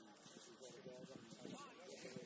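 Faint, distant human voices calling and talking, with no words clear.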